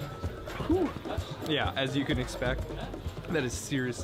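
Men's voices speaking and reacting over background music.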